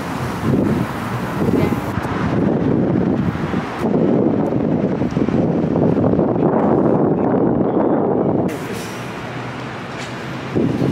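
Traffic on a city street, vehicles running past, with wind on the microphone. The louder traffic noise drops off suddenly near the end.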